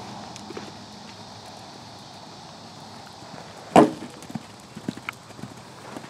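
A horse's hoofbeats at the canter on arena sand, heard as scattered dull clicks. About four seconds in there is one sharp, loud thump.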